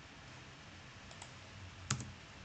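Computer mouse clicks: two faint clicks a little after a second in, then one sharper, louder click near the end.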